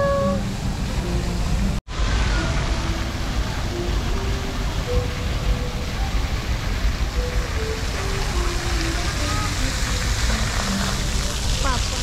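Electronic piano notes from an interactive piano ladder, single notes one after another roughly every half second, stepping up and down in pitch, over a steady wash of background noise. The sound cuts out completely for an instant about two seconds in.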